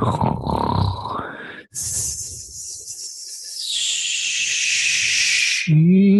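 A person's voice making wordless vocal sounds: first a rough, grunting exhale. Then comes a long breathy "shh" hiss that slides down in pitch and cuts off. A steady hummed tone starts just before the end.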